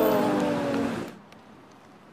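A man's drawn-out groan of "aduh" (ouch) over background music, both cutting off suddenly about a second in, leaving only faint background noise with a few light clicks.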